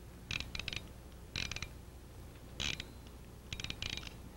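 Combination lock dial being turned by hand, clicking in four short quick runs of ticks.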